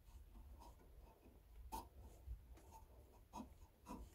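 Near silence: faint rubbing and a few light clicks from a hand handling a turned wooden mallet on the lathe.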